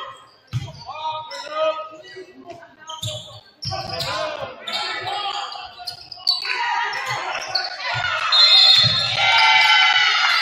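A basketball bouncing on a hardwood court during play, heard as several irregular deep thumps. Shouting voices of players and onlookers echo through the gym over it and grow louder near the end.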